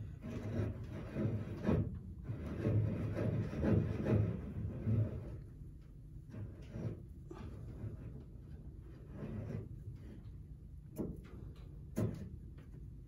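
Outer tie rod end being spun by hand onto the inner tie rod's threads: rubbing and handling sounds with light metal clicks. The sounds are busy for the first five seconds or so, then thin to a few scattered clicks.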